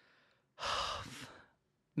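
A man's heavy sigh, a breathy exhale close to the microphone. It starts about half a second in and fades out over about a second.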